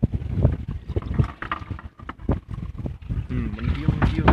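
Wind and water noise aboard a small wooden fishing boat on choppy sea: an uneven, gusty low rumble with no steady engine note. A brief faint voice comes near the end.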